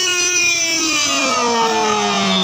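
Background song: a singer holds one long note, its pitch sliding down in the second half.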